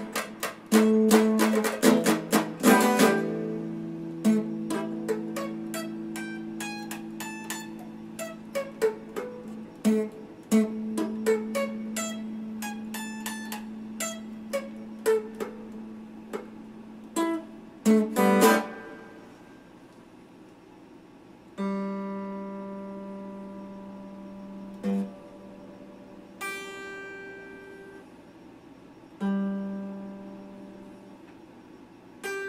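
Red Stratocaster-style electric guitar being played: quick picked notes over a long-held low note, a short flurry, then a few notes struck and left to ring out, fading between them.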